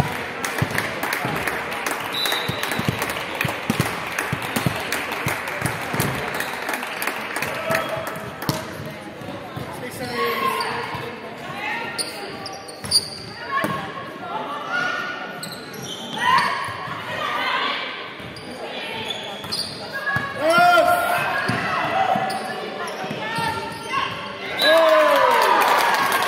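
Indoor volleyball in a large hall: ball strikes and footfalls on the court floor under players' shouted calls, rising to loud shouts near the end as one team celebrates winning the point.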